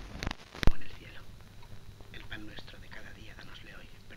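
Two sharp pops on an old film soundtrack within the first second, where the picture cuts to a new scene. Low, murmured speech follows from about two seconds in, over a steady background hum and hiss.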